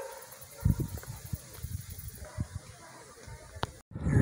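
Quiet outdoor ambience with a few soft low thumps and a faint click, cut off by a brief dropout just before the end.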